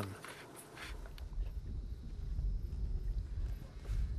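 Low, uneven rumble of wind buffeting the microphone outdoors, starting about a second in, with a faint rustle above it.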